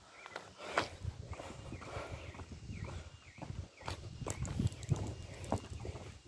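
Footsteps, a few irregular steps, mixed with knocks and rubbing from the handheld camera.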